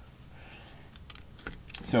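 Dry-erase marker writing on a whiteboard: a faint scratchy stroke, then a few quick taps and clicks of the tip against the board near the end.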